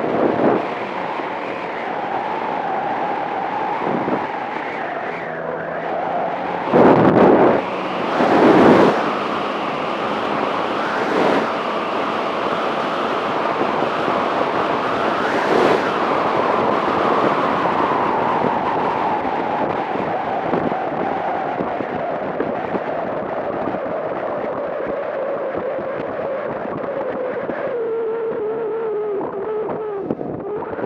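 Motor scooter engine running steadily under way, mixed with wind rushing over the microphone. There are a few loud whooshes about seven to nine seconds in, and the engine note drops near the end as the scooter slows.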